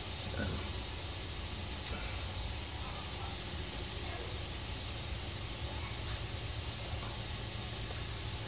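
Prusa i3 3D printer's cooling fans running with a steady whir and hiss, a thin high whine over a low hum.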